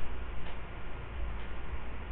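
Two faint ticks about a second apart over low room rumble.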